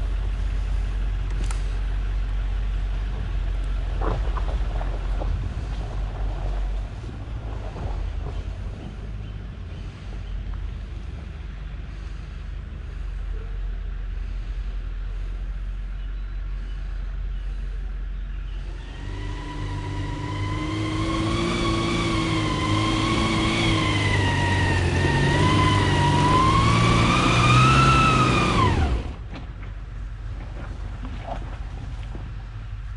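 Off-road vehicle engine: a low rumble at first, which fades after several seconds. About two-thirds of the way in, a loud whine sets in with several pitches rising and falling together. It grows louder and then cuts off suddenly near the end.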